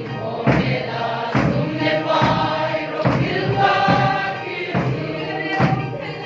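A congregation singing a hymn together in chorus, with hand claps on the beat a little more than once a second.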